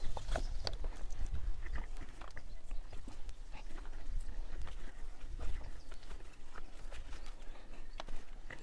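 Footsteps on a bare soil and rubble floor: scattered light scuffs and ticks over a low steady rumble on the microphone.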